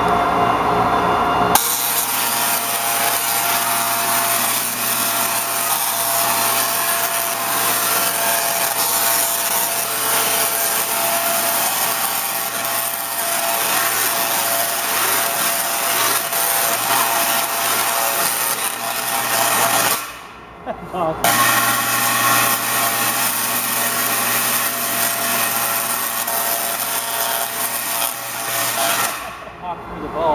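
Large Tesla coil firing, its arcs making a loud, harsh, steady buzz. The buzz starts about a second and a half in, stops for about a second around two-thirds of the way through, then runs again until just before the end.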